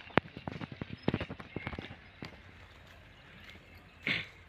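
A quick, irregular run of sharp clicks and knocks, about a dozen in the first two seconds, thinning out into a low steady background.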